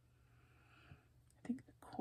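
Quiet room tone with a soft breathy exhale, then a brief murmur of a woman's voice near the end.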